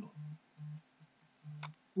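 A mobile phone vibrating with an incoming call: four short, low buzzes in a row, with a single sharp click near the end.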